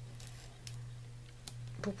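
Craft knife blade drawn along a metal ruler across a thin plastic document sleeve: faint scraping with a couple of small clicks. The blade is dull and does not cut through.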